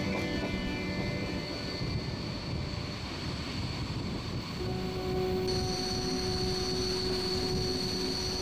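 Flåm Railway train running downhill, heard from a carriage window: a steady rumble of the wheels on the track, with a steady whine joining about halfway through.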